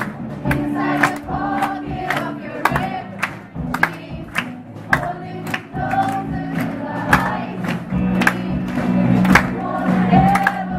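A live group of singers with electric guitars and bass, the voices singing together in chorus over a steady beat of sharp hits about twice a second.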